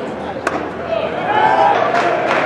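A single sharp pop about half a second in as the pitched baseball reaches home plate, then voices calling out from the crowd or dugout.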